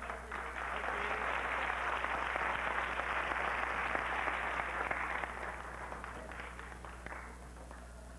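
Studio audience applauding: the clapping swells in about half a second in, holds for several seconds and fades out near the end.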